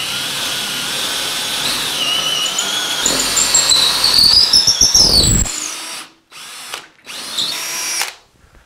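Cordless drill with a quarter-inch bit boring a hole up into a wooden beam. It runs steadily for about six seconds, its whine rising in pitch partway through, then stops, followed by two short bursts of the drill.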